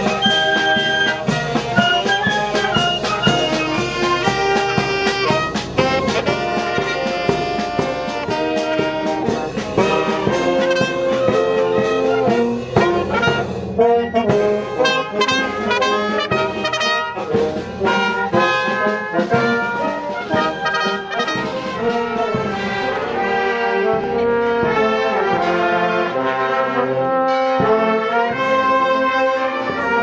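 A marching band of brass and wind instruments playing a march, with continuous melody lines over sustained accompaniment.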